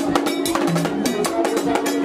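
Vodou ceremonial music played live: drums and a struck metal bell in a quick, steady rhythm, with voices singing over it.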